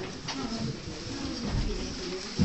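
Low, indistinct murmur of several people talking in a small meeting room, with a few light clicks.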